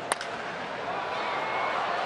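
A bat hitting a pitched baseball with a single sharp crack, followed by ballpark crowd noise that slowly swells as the fly ball carries.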